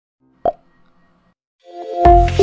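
Logo intro sound effects: a single sharp pop with a brief ringing tone about half a second in, then a rising swell near the end leading into electronic music.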